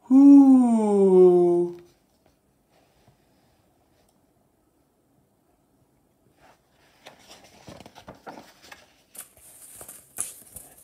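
A man's voice imitating a great horned owl's hoot: one long "whoooo" falling in pitch over the first two seconds. Near the end comes soft paper rustling as book pages are turned.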